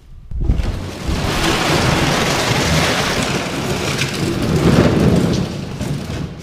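Empty plastic chemical jugs clattering and knocking together without a break as they are piled into a pickup's bed, a dense hollow rattle.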